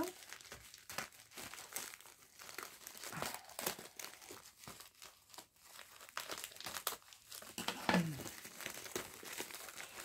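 Packaging crinkling and rustling as a well-wrapped parcel is unwrapped by hand, in irregular, scattered crackles.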